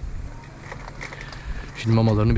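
Two Border Collies eating dry food from metal bowls, with faint, irregular crunching and clicks. A man's voice comes in near the end.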